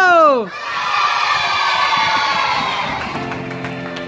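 A loud cry falling steeply in pitch, then a group of children cheering and shouting together for a couple of seconds, fading as soft sustained music chords come in near the end.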